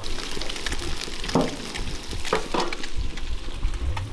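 Coral trout fillets sizzling in a non-stick frying pan on a portable gas stove: a steady crackling hiss, with a few brief sharper sounds cutting through about one and a half and two and a half seconds in.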